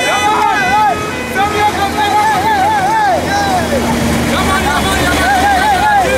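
A high voice chanting in short phrases that rise and fall, over the steady low rumble of vehicle engines.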